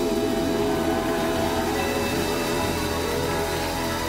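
Live band music closing out a song: long held notes that waver slightly in pitch over a steady low bass.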